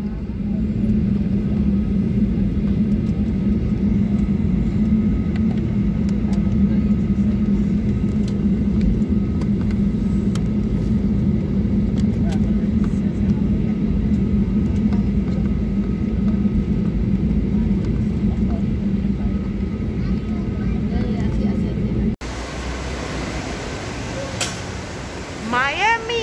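Airliner cabin noise while taxiing: the jet engines at idle give a steady drone with a hum in it. About 22 seconds in it cuts off abruptly to quieter indoor ambience.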